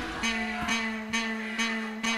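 Instrumental funk carioca backing track over the PA, heard on its own with no vocal: a held, plucked-string-like note under a light, regular beat of about two strikes a second.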